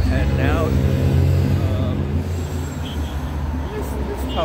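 Road traffic on a busy street: a steady rumble of passing cars.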